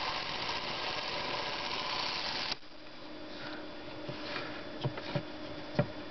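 Spring-wound clockwork motor of a 1959 Bolex Paillard B-8SL 8mm movie camera running with a steady whir, its run switch locked in the continuous position, then stopping abruptly about two and a half seconds in. A few faint clicks follow as the camera is handled.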